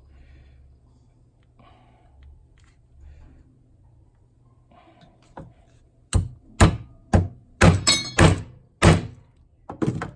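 Hammer striking a steel centre punch to drive an aluminium Lee plug back into its bore in a diesel injector rocker arm. After quiet handling, a run of about seven sharp metallic blows, roughly two a second, starts about six seconds in. The plugs had drifted out under oil pressure, and the blows are meant to hold them in position.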